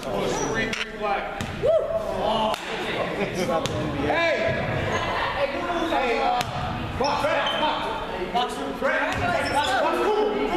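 Basketball bouncing on a hardwood gym floor, with sneakers squeaking during play, echoing in a large gym.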